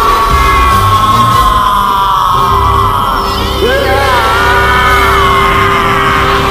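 A man's drawn-out battle cry over dramatic background music. The first cry slides slowly down in pitch over about two seconds, and a second cry rises and holds about three and a half seconds in.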